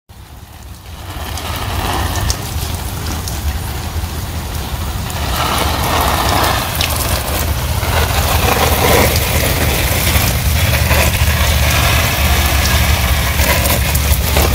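Water from a hose spraying onto fig tree leaves, a steady splashing hiss that swells in over the first couple of seconds, over a steady low mechanical hum.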